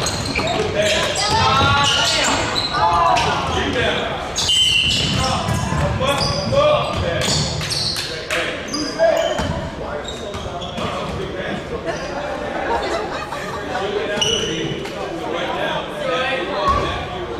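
Basketball game in a large echoing gym: a ball dribbling on the hardwood floor, sneakers giving short high squeaks, and players calling out to each other.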